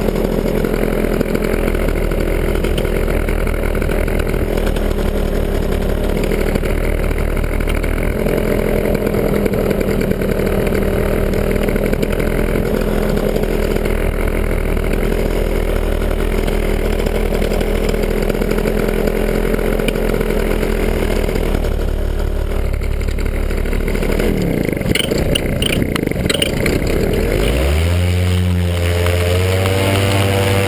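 Two-stroke paramotor engine running steadily at low speed; about 24 s in the throttle is worked, the pitch dips and swings, and near the end it rises to a higher steady speed as power comes on for takeoff.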